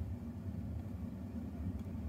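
Steady low rumble of a car heard from inside the cabin, with no other distinct event.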